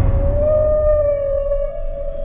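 Killer whale (orca) call: one long, slightly wavering tone with overtones over a low rumble, stepping a little higher in pitch near the end.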